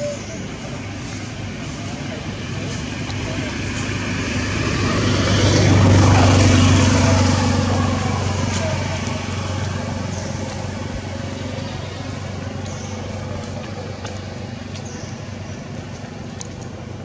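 A motor vehicle passing by: its engine hum builds over a few seconds, peaks about six seconds in, and fades away.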